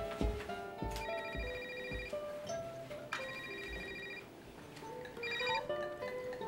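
A cell phone ringing with an electronic ringtone: two rings of about a second each, two seconds apart, then a shorter third ring that cuts off as it is answered. Soft background score music plays underneath.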